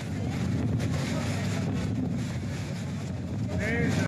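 Strong storm wind buffeting a phone's microphone, a steady low rumble. A voice calls out briefly near the end.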